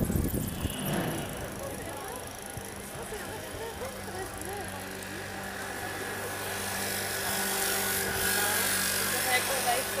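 Street ambience: an indistinct murmur of many voices from people seated at an outdoor café terrace and passing by, over a steady low hum. A hiss swells in the second half.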